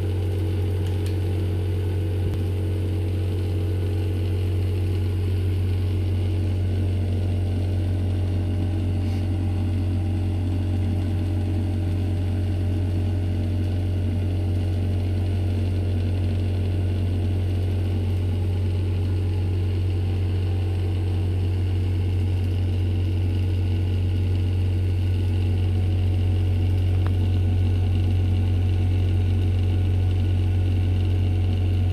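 A steady low machine hum, like a motor idling, that holds unchanged throughout.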